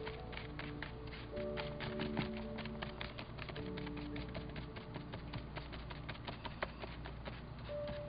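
A flat paintbrush scraping and dabbing across a paper page through wet medium and glitter, making quick, irregular small ticks, over soft background music.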